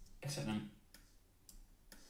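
A handful of faint, sharp computer-mouse clicks spread across two seconds in a quiet room, with a brief voiced "uh" about a quarter-second in.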